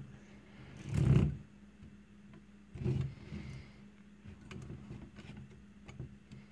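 The plastic pan-and-tilt head of a lightweight tripod being swung by its handle, moving smoothly. Two short movement sounds come about one second and three seconds in, followed by a few faint ticks.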